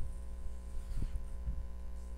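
Steady low electrical hum in the recording, with two faint low thumps about a second and a second and a half in.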